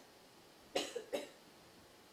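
A man coughs twice, two short coughs less than half a second apart, a little under a second in.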